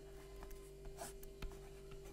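Faint scratching and light taps of handwriting on a touchscreen, with a few small ticks over a steady low hum.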